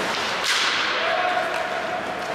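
A single sharp crack from the hockey play about half a second in, echoing through the large arena as it fades.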